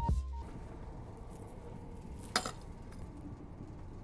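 Background music stops about half a second in, leaving the steady low rumble of a train carriage. A single sharp clink comes about two and a half seconds in.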